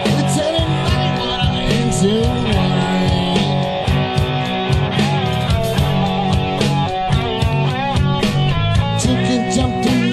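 Live rock band playing: electric guitars, bass and drums with a steady beat.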